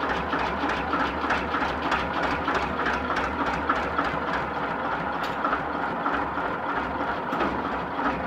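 Small narrow-gauge diesel locomotive's engine running steadily at a low, even throb.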